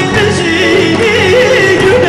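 A man sings into a microphone, his voice wavering and ornamented in pitch, over a band's instrumental accompaniment.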